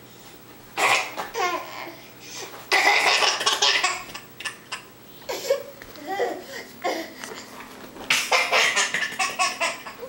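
A toddler belly laughing in four separate bouts.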